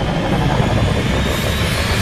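Sci-fi spacecraft engine sound effects from a film trailer: a steady jet-like rush, with a whine that rises in pitch through the second half.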